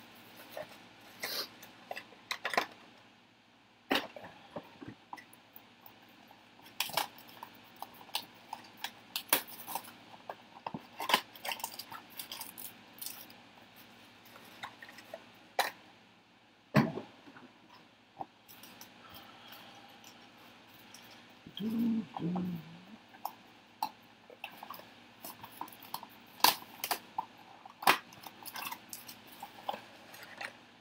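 Trading card boxes, packs and cards being handled on a desk: scattered light clicks, taps and rustles at irregular intervals, with a brief low hum about two-thirds of the way in.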